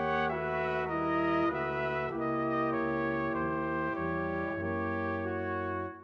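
Brass quintet of two trumpets, French horn, trombone and tuba playing a held chordal passage, the bass line stepping to a new note about every half second. The chord fades away near the end.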